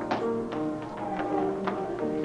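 Music with a melody of held notes, with sharp taps about three times a second.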